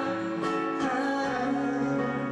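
A live rock band playing a song, with acoustic guitar, electric guitar and keyboards. The chord changes about 1.3 s in.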